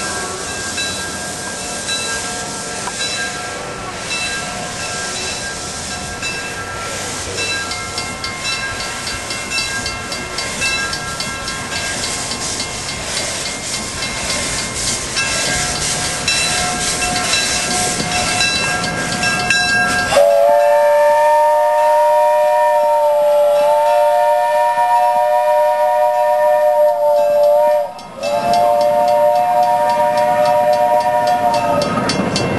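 A steam train running with a steady rushing noise and hiss for about twenty seconds, then a steam locomotive's chime whistle blowing a loud three-note chord, a long blast of about eight seconds that wavers slightly in pitch, a brief break, and a second blast near the end.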